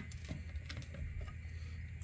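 Faint handling sounds of a small copper cold plate being fished out of a plastic bowl of liquid by hand: a few light clicks and taps in the first second, over a steady low hum.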